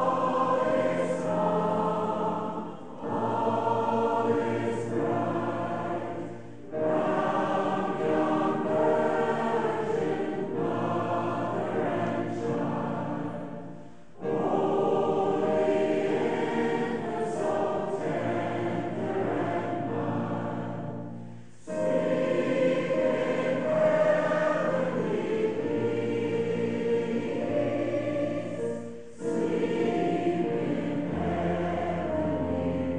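A mixed choir singing a Christmas song, in phrases broken by short pauses every few seconds.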